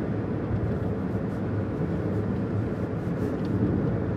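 A car driving up with its engine running, a steady low rumble of engine and tyre noise.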